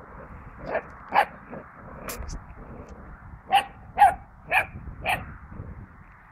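Puppy barking in short sharp barks: two about a second in, then four more in quick succession about half a second apart.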